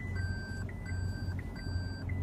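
Toyota Prius parking-assist proximity warning beeping in the cabin: a repeating pattern of a short higher blip followed by a longer lower tone, about three times in two seconds, signalling an obstacle close to the car.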